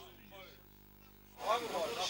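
Very faint voices at first, then about one and a half seconds in, people's voices talking come in abruptly and louder.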